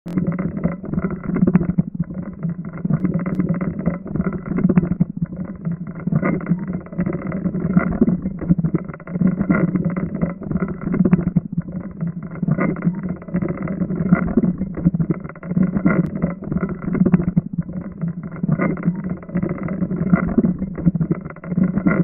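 Steady mechanical running noise: a low, continuous rumble with fast, uneven flutter, like a motor or machinery running without a break.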